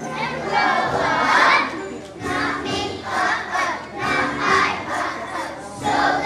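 A group of first-grade children singing together on stage, many voices at once in short phrases.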